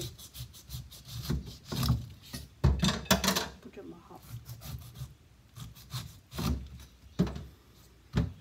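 Kitchen knife sawing through the tough skin of a whole pineapple on a wooden cutting board, cutting off its ends: a series of uneven rasping strokes, the loudest about three seconds in.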